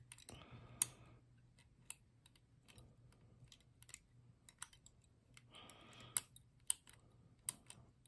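Scattered small, sharp metallic clicks and ticks of a lever-lock pick and tensioner working inside a six-lever ERA Big 6 lever lock as the levers are lifted. The clicks come at an uneven pace, with sharper ones about a second in and around six to seven seconds.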